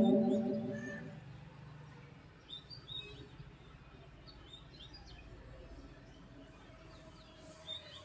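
Faint, scattered bird chirps during a pause in the singing, after a held sung note dies away in the first second.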